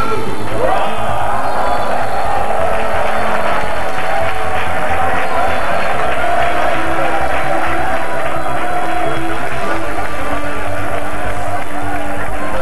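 Music playing under a crowd cheering and clapping.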